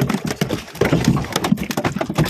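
Rapid, irregular knocks and slaps on a boat deck.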